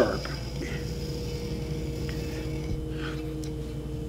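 Electric potter's wheel running with a steady motor hum, with faint, light scraping of a metal trimming tool on a leather-hard clay cylinder.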